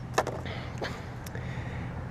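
A paintbrush set down in a plastic paint tray: a sharp click just after the start, then two fainter taps, over a steady low background rumble.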